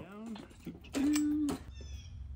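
A short, steady-pitched vocal sound, held for about half a second a second in. Near the end comes a faint high metallic ring as a piston ring is worked onto a forged piston.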